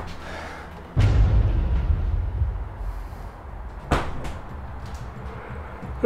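A sudden heavy thump about a second in, with a low rumble that lingers for over a second, then a single sharp knock near four seconds in.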